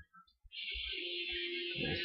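A half-second dropout to near silence, then a steady faint hiss with a short, steady humming tone, before a man's voice starts near the end.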